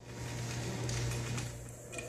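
Room noise with a steady low hum and a few faint clicks.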